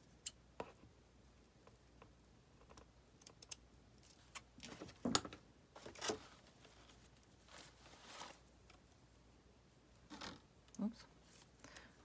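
Quiet craft-table handling sounds: scissors snipping, then set down on the table, and fabric and lace scraps rustling as they are sorted by hand, heard as scattered soft clicks and rustles.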